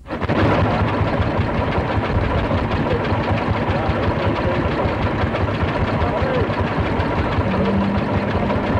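A blowlamp burning with a steady roar, with voices and an engine running in the background.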